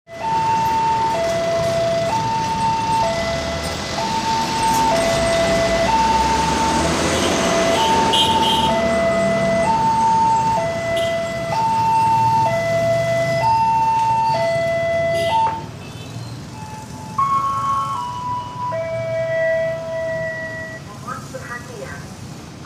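Railway level-crossing warning alarm sounding an alternating high–low electronic two-tone, about one tone a second, until it stops about fifteen seconds in. Road traffic passes, and a few longer tones follow near the end.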